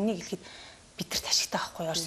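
A woman speaking Mongolian, with a short breathy pause about half a second in before she carries on talking.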